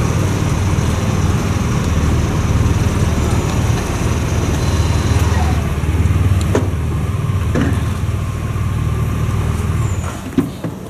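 Hearse engine idling with a steady low rumble, cutting off right at the end; a couple of sharp clicks sound about two-thirds of the way through.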